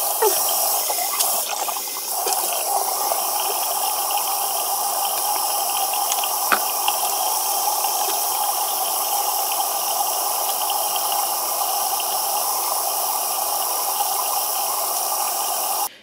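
Bathroom tap running steadily into the sink while a face is washed under it, with one small click about six and a half seconds in.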